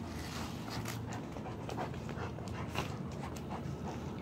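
A dog panting while chewing and mouthing a rubber toy, with irregular short clicks and crackles from its teeth on the toy.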